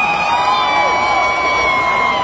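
Large arena crowd cheering, with several long, high, held cries and whoops sounding above the noise, some sliding down in pitch.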